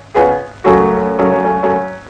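Upright piano playing the opening chords of a march song: a chord struck right at the start, then a loud one about half a second later that rings on, with more chords following.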